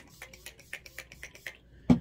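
Setting spray bottle pumped in rapid short spritzes, about six a second, stopping about 1.5 s in, then a single loud thump near the end.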